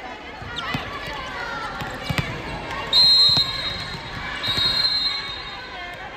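Indoor volleyball play in a large hall: a few sharp knocks of the ball being struck, players shouting, then a loud blast of the referee's whistle about three seconds in, followed a little later by a second, shorter whistle.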